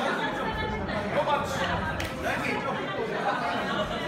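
Several people talking at once: onlookers' chatter around the mat, with one sharp click about halfway through.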